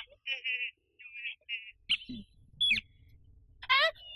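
A high-pitched voice making a few short wordless sounds, then a louder wordless cry near the end.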